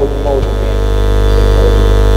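Steady, loud electrical mains hum with a buzzy row of even overtones, coming through the handheld microphone's sound system.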